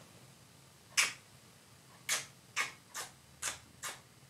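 Six sharp kissing smacks from a woman's lips, her hands held to her mouth: one, then after a pause five more about half a second apart.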